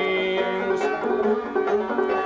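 Banjo being picked, a short instrumental passage between sung lines of a folk song, several notes ringing together.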